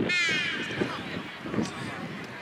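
A loud shout from a player on the pitch, one call falling in pitch and lasting about half a second, followed by the lower general noise of play with a couple of dull knocks.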